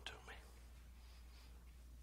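Near silence: room tone with a faint, steady low hum, after the last syllable of a spoken word at the very start.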